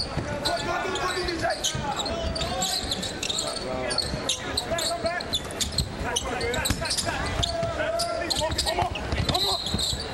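A basketball being dribbled and bounced on a hardwood court during live play. Many sharp knocks come throughout, with scattered voices of players and crowd.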